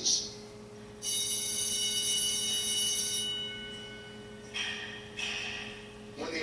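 A bell-like electronic chime rings about a second in and fades over about two seconds, played back through the room's speakers. A softer hissing sound follows near the end.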